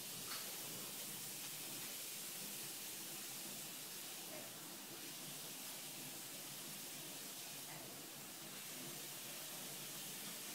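Steady faint hiss of room tone and recording noise, with a small knock just after the start.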